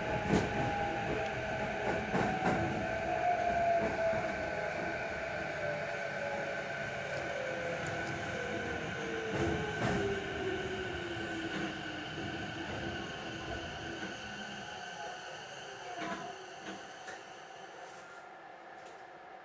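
Electric train's motor whine falling steadily in pitch over about twelve seconds and dying away as the train brakes to a stop, over the rumble of the train on the rails. There is a short burst of noise about sixteen seconds in.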